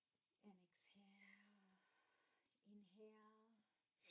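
Near silence with a woman's voice very faint: two soft, steady vocal sounds, one about a second in and one near the three-second mark.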